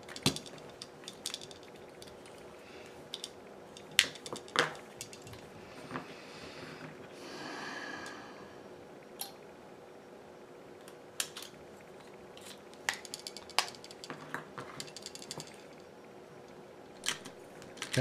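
Small repair tools, a plastic spudger and tweezers, tapping, clicking and scraping against a smartphone's plastic frame and internal parts. Scattered sharp clicks come throughout, the loudest about four seconds in, with a softer scraping rub lasting a second or so around the eight-second mark.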